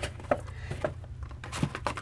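Faint, scattered clicks and light knocks of a clear plastic packaging tray being handled as a vinyl figure is taken out of it, over a low steady hum.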